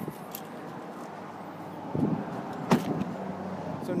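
A pickup truck's door being shut: one sharp thump about two-thirds of the way through, over low steady handling and movement noise.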